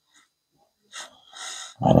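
A man breathing audibly through the nose: a short breath about halfway in and a longer one just before he begins to speak.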